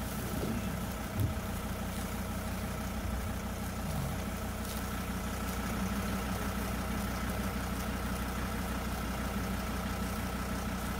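A vehicle engine idling steadily: a low, even hum with a faint constant whine above it, and a brief soft bump about a second in.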